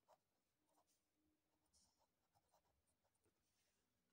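Very faint scratching of a pen writing on paper, a few soft short strokes in near silence.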